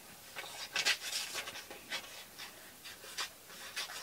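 Sheets of coloring-book paper being handled and shuffled on a table, a series of soft, irregular rustles.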